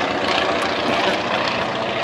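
Antonov An-2's nine-cylinder radial engine and propeller running steadily as the big biplane pulls up and banks overhead.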